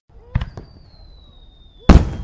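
Fireworks going off: a sharp bang about a third of a second in, a thin high tone slowly falling in pitch, then a much louder bang near the end.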